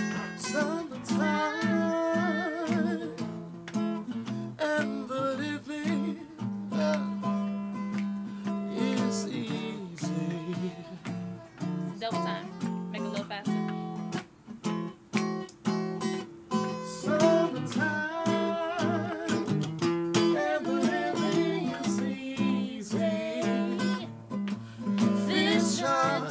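Acoustic guitar strummed with voices singing over it, the sung notes wavering with vibrato.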